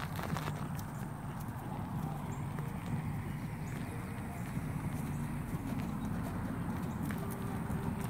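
A chestnut horse's hooves beating on dirt and grass as it canters, over a steady low rumble.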